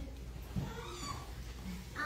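A brief high-pitched cry that glides in pitch, about half a second to one second in, over a low steady room hum.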